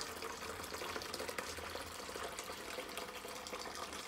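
Hibiscus (sorrel) drink poured from a plastic jug through a fine mesh sieve into a plastic bowl: a steady, soft trickle of liquid.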